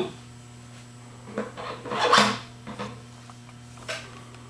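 Rotovac 360i quad cleaning head clacking and knocking as it is handled and screwed onto the machine's hub: a cluster of knocks between about one and three seconds in, the loudest just after two seconds.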